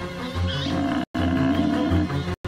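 A lion roaring and growling over background music, with a brief silent gap about a second in.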